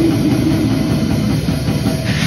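A live band playing loud heavy metal: distorted electric guitar over a drum kit.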